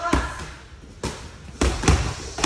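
Boxing gloves punching focus mitts: four sharp smacks, the first just after the start, one about a second in, and two in quick succession near the end.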